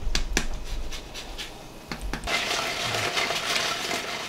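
A fine metal grater scraping lemon zest over a pan of roast potatoes. There are a few light metal clicks near the start, then rasping for about a second and a half.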